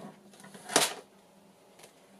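A single short rustle-and-knock of a paper pad being handled on a tabletop, just under a second in, with a faint tick near the end.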